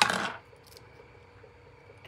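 A sharp click and a short rustle as sheer ribbon is handled and pressed against the card front, followed by quiet room tone with a faint hum.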